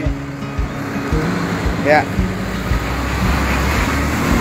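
A road vehicle passing close by: a broad rumble of engine and tyre noise that builds through the second half, under background music.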